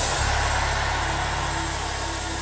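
A sustained low keyboard pad note holds under the prayer and slowly fades, with a faint higher tone coming and going above it.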